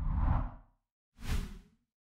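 Two whoosh sound effects from an animated logo outro: one swells and fades in the first second, and a shorter one follows just over a second in.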